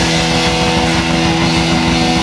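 Live rock band playing: a distorted electric guitar holding a sustained chord over busy drums and bass.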